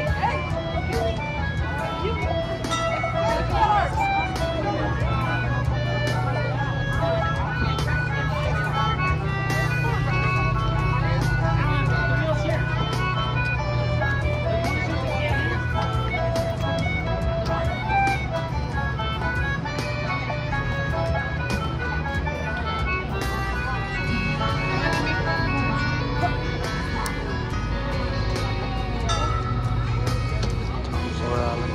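Instrumental background music with a steady run of melody notes, over a continuous low hum and the chatter of a crowd.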